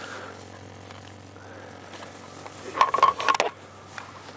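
Handling noise and rustling from a handheld camera being moved outdoors, over a low steady background, with a short louder burst of rustling and scraping about three seconds in.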